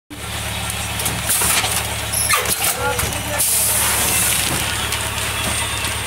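Pneumatic silage bag packing machine running with a steady low motor hum, and bursts of air hiss about a second and a half in and again from about three and a half seconds.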